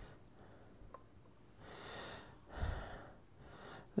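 Quiet breathing close to the microphone: two soft breaths between about one and a half and three seconds in, with a faint small click about a second in.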